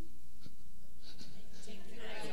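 Room tone during a pause in speech: a steady low hum with faint, indistinct voices.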